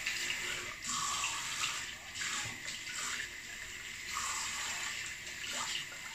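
Tap water running into a sink, with splashing now and then as shaving lather is rinsed off a face.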